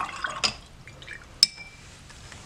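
Paintbrush rinsed in a glass jar of water: a short splashy swish, then a single sharp clink with a brief ring about one and a half seconds in.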